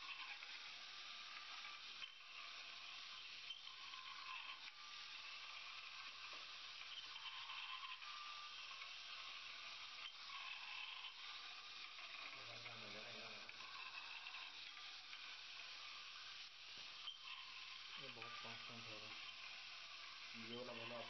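Faint steady hiss, close to silence: quiet room tone.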